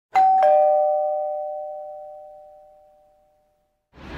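Ding-dong doorbell chime: two struck notes, the second lower, about a third of a second apart, ringing out and fading over about three seconds.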